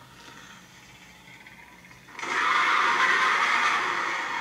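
Soundtrack of an animated dinosaur video playing back: faint for the first two seconds, then a loud, harsh rushing noise sets in about halfway through and holds steady.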